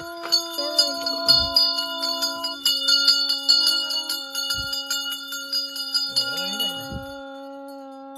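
Small hand bells rung rapidly and without pause for worship, a dense jangling ring that stops about seven seconds in, over a steady low drone that carries on after it.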